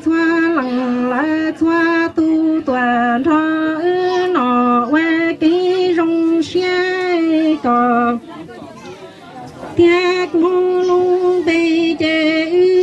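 A woman singing Hmong kwv txhiaj (sung poetry), unaccompanied, through a microphone and loudspeaker: long held notes that step back and forth between two main pitches, with a short pause for breath about eight seconds in.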